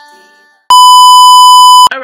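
A loud, steady electronic beep: one high tone that starts suddenly about a second in, holds for just over a second and cuts off abruptly. Before it, the last note of intro music fades out.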